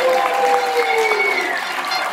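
Crowd of spectators clapping and shouting, with a few long, sliding voices or horn tones carrying over the noise.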